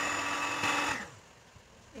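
Electric hand mixer running as it beats cake batter, switched off about a second in.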